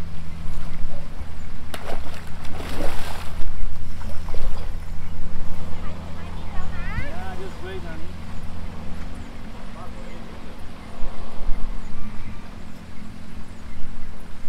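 A big hooked grouper thrashing and splashing at the water's surface while it is played to the bank, with one loud splash about three seconds in. A steady low machine hum runs underneath throughout.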